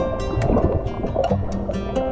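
Background music with a regular beat and sustained pitched notes.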